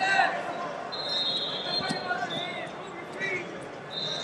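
Wrestling shoes squeaking on vinyl mats as the wrestlers shift their feet: several short squeaks and one longer high squeal about a second in, with a few sharp taps. Murmur of voices in a large, echoing hall underneath.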